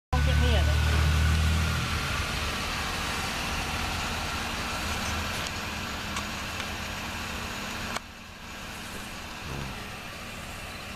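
A motor vehicle rumbling in the street, loud and deep for the first two seconds and then easing into a steady traffic-like noise. The noise drops off suddenly about eight seconds in.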